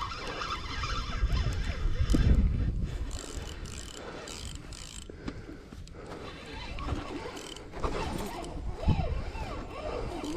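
Spinning fishing reel being cranked under the load of a hooked blue catfish, its gears turning as line is wound in. There is a low rumble about two seconds in.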